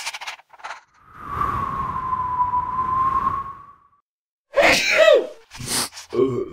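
Cartoon sick-character vocal effects. A short sneeze-like burst comes right at the start, then a long wheezy, whistling breath lasts about three seconds. Near the end there are short moaning sounds that fall in pitch.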